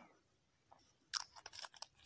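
Small crisp clicks and scratches from handling a small glass vial and its metal screw cap, starting about a second in.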